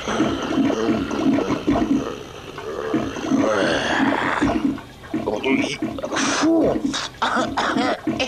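Wordless cartoon voice sounds from animated characters, mixed with water sloshing in a toilet bowl as a stick is worked around in it, and a few sharp splashy strokes in the second half.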